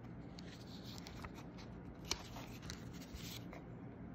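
Quiet paper rustling and scraping with scattered small clicks, one sharper click about two seconds in: the pages of a paper cinema guide booklet being handled.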